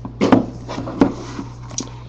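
A trading-card box being handled and set down on a wooden desk: a few sharp knocks, the loudest about a third of a second in and another about a second in.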